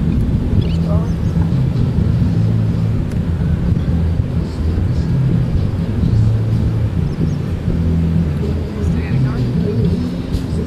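Beach ambience: a continuous low rumble of surf and open air with indistinct voices of people talking, and a few brief high calls.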